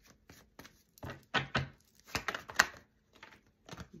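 A deck of tarot cards being shuffled by hand: an irregular run of sharp card snaps and flicks, loudest from about a second in.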